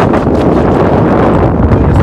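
Strong gale wind blowing across the microphone: loud, steady wind noise with the most weight in the low end.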